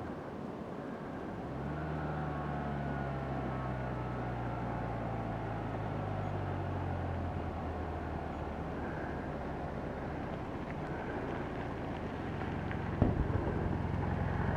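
Motorcycle engines: a steady low engine note with a slowly falling pitch for a few seconds, then a motorcycle approaching and getting louder near the end, with a sharp knock about thirteen seconds in.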